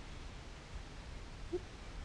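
Quiet background: a steady faint hiss and low rumble, with one faint short blip about one and a half seconds in.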